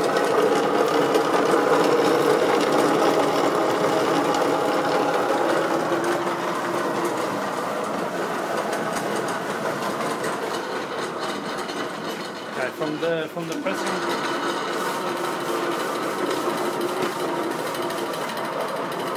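Motorised cricket-bat pressing machine running steadily, its steel roller pressing a willow cleft under heavy pressure to compress the face of the bat blade. The running tone drops slightly about six seconds in.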